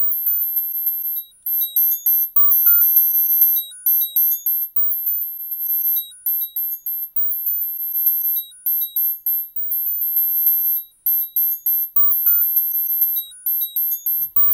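FM bell patch on Reason's Thor synthesizer, built from two detuned FM-pair oscillators and played by a Matrix step sequencer in a random pattern: a quick sequence of short, chiming synth notes, pretty high-pitched.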